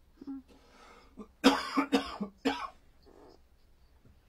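A person coughing: a brief throat-clearing at first, then a quick run of about four coughs in the middle.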